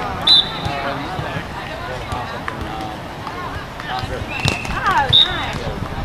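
People talking and calling out around an outdoor sand volleyball game, with two short, sharp, high-pitched sounds about a third of a second in and about five seconds in.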